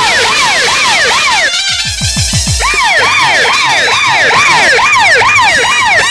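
Siren sound effect, a rapid rising-and-falling wail repeating about three times a second. It breaks off about a second and a half in for a few falling low sweeps, then resumes.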